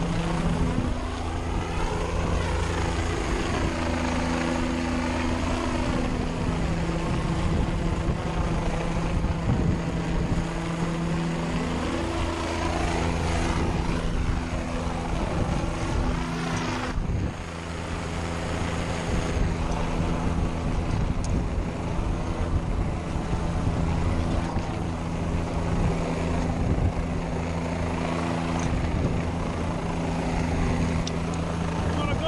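Helicopter hovering overhead, heard from beneath at the end of its long line: a steady low rotor beat and engine drone under a loud rush of rotor wash.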